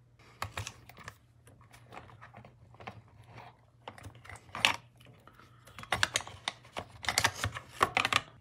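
Scattered light clicks and taps of a hex driver and hard plastic parts being handled on the underside of a Traxxas Sledge RC truck, with a sharper tap a little past halfway and a busier run of clicks near the end.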